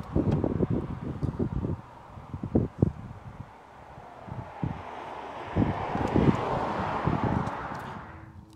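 Wind buffeting the microphone in irregular low gusts over a steady rushing hiss. The gusts ease off around three and a half seconds in, then build up again.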